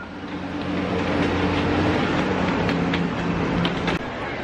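Wildlife Express Train rolling past on its track: a steady low mechanical drone with light clicking from the wheels and couplings.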